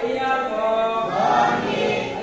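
A group of voices singing a devotional chant together, with held notes.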